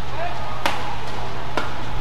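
Badminton racket strings striking a shuttlecock twice, about a second apart, in a rally, with short squeaks of court shoes on the floor.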